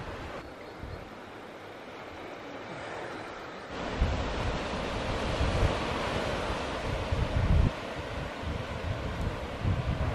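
Sea surf washing onto a sandy beach, with wind gusting on the microphone; both get louder about four seconds in.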